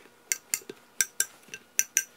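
Kitchen knife cutting through masa dough and striking a marble board, about eight sharp clicks.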